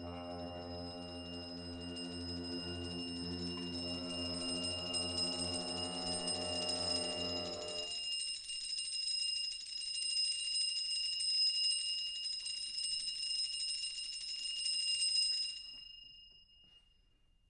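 Contemporary chamber-ensemble music. Low sustained pitched tones stop about halfway through. High metallic percussion tones, played as a fast roll with hard plastic mallets, ring on and are damped abruptly near the end.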